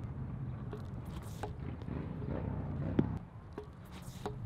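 A shot putter's standing throw from a concrete ring: a single sharp thump about three seconds in, the loudest moment, as he drives through the throw and lets the shot go. A low rumble sits under it and eases just after.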